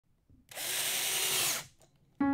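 Power drill driving a wood screw into a wooden board. It runs for about a second with a steady motor whine, then stops once the screw head sinks flush into the wood.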